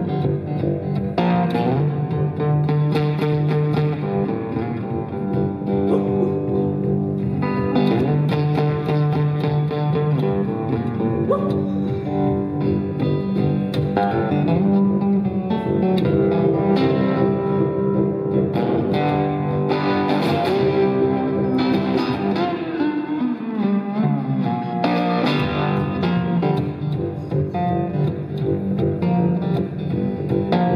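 Live blues song played on guitar, an instrumental passage with plucked and strummed guitar notes. The lowest notes drop away for a couple of seconds about three quarters of the way through.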